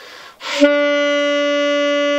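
Saxophone blowing a single loud, steady long tone after a short rush of breath. The note holds level and pitch without wavering, showing that stronger breath support clears up a trembling tone.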